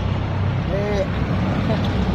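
Road traffic noise: a steady low engine rumble from vehicles close by, with a brief vocal sound just under a second in.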